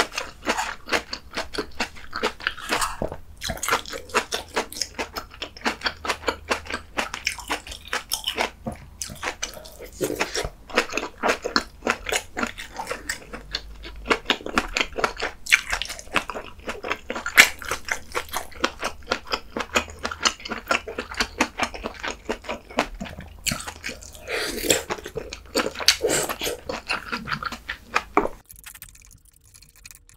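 Close-miked wet chewing of kimchi sausage stew, with many quick, irregular mouth smacks and clicks throughout.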